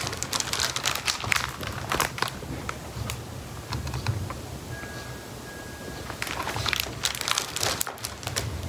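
Large hardcover picture book being handled, its pages and cover rustling and crinkling in irregular bursts as it is lifted up open and then lowered again. The rustling is busiest at the start and again near the end, quieter in between.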